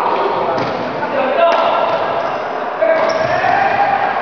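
Badminton racket hitting the shuttlecock in a singles rally, three sharp strikes about a second apart, echoing in a large sports hall.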